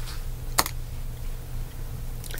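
One sharp computer click about half a second in, over a steady low hum.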